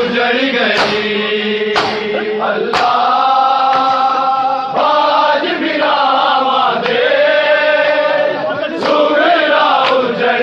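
Men chanting a noha in unison, with long held and sliding notes, over rhythmic chest-beating (matam): sharp hand-on-chest slaps about once a second.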